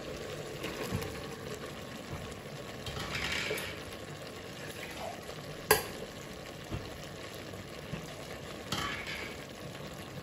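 Vegetables frying with a steady sizzle in a pressure cooker while green masala paste is scraped with a spoon from a steel mixer jar onto them. One sharp metallic clink comes about halfway through.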